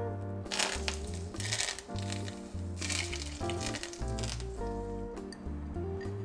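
Hot oil sizzling in three short bursts as it is poured over a steamed fish's fresh spring onion and coriander garnish, under background guitar music.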